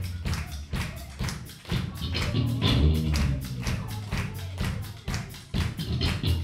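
Live rock band playing a song: drums keep a quick, steady beat under electric guitars and bass guitar.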